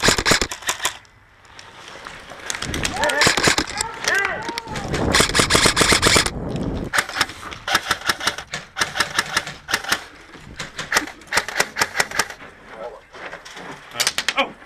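Airsoft electric guns firing on full auto in repeated bursts, each a rapid string of sharp shots, with shouting voices mixed in about three to five seconds in.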